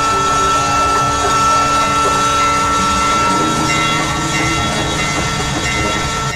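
Dense industrial noise within an experimental music track: a rattling, train-like mechanical clatter under a held high tone, with a steady low drone coming in about halfway.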